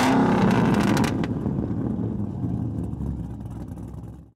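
A car engine revs once, rising and falling in pitch, and its low rumble fades away over the next few seconds.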